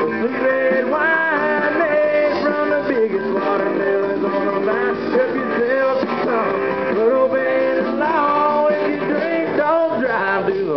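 Live country band playing an instrumental break on amplified acoustic and electric guitars, with sliding, bending guitar notes over a strummed rhythm.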